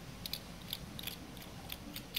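A snap-off utility knife blade slicing and scraping fibrous tissue from the base of a cactus, heard as faint, irregular short cuts, several over two seconds.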